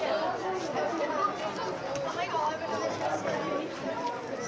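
Many voices calling and shouting over one another: junior footballers and sideline spectators during a contest for the ball, with no single clear speaker.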